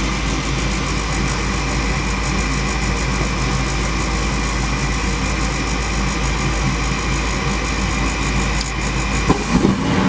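Goodman 80% gas furnace starting up: its draft inducer motor runs with a steady hum while the hot surface igniter heats. Near the end there is a sharp click and the sound changes as the gas burners light.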